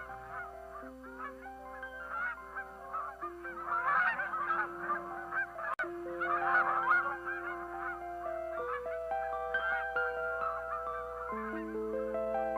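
A flock of geese honking in flight, many overlapping calls, thickest through the middle and thinning near the end, over background music of slow held notes.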